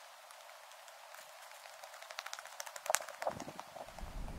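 Faint steady outdoor hiss. In the second half comes a quickening run of small sharp clicks and crunches, loudest about three seconds in.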